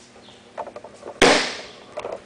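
A person's body hitting a foam mat in a forward breakfall: one sharp, loud slap about a second in that fades quickly, after a few light scuffs.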